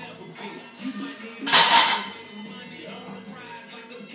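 A loaded barbell is racked onto a power rack's steel J-hooks about one and a half seconds in: a loud metal clank lasting about half a second. Background music plays throughout.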